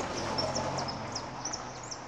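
Small birds chirping, short high notes repeated many times, over a steady outdoor background hiss.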